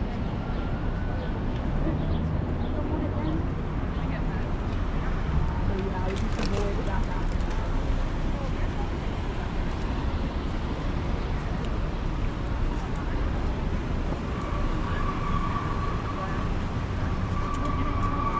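City street ambience: steady traffic noise with indistinct chatter of passing pedestrians. A steady high tone sets in near the end.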